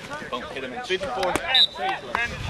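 Men shouting and calling out in overlapping voices, with no clear words. A sharp smack comes a little past halfway, followed by a brief high chirp.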